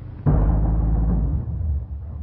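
An open car's engine starting abruptly with a loud burst about a quarter second in, then running with a steady low rumble.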